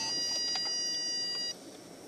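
A steady high-pitched electronic beep that holds for about a second and a half and then cuts off suddenly.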